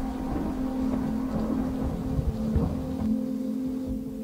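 A TV drama's soundtrack: a dark, held low drone from the score over an uneven low rumble.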